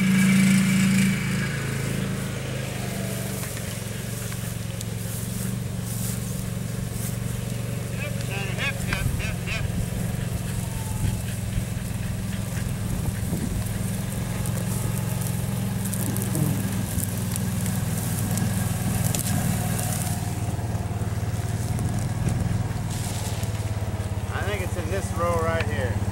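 Kubota utility vehicle's engine running steadily with a low, even hum.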